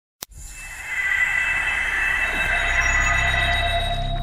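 Logo-intro sound effect: a short click, then a hissing swell that builds over the first second into a shimmering sound with several held high tones over a low rumble.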